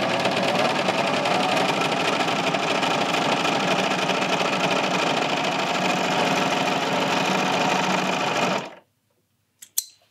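Bernina serger running at a steady speed, stitching a knit shoulder seam and then chaining off past the end of the fabric. It stops abruptly about a second before the end, followed by a single short click.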